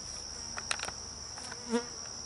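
Steady high-pitched chorus of insects, a continuous trill, with a brief low buzz about three-quarters of the way through and a couple of faint clicks.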